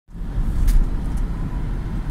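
Steady low road and engine rumble heard from inside a moving car's cabin, with a brief scratchy sound a little under a second in.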